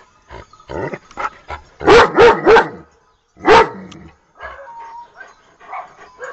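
A dog barking: three quick loud barks about two seconds in, then one more about a second later.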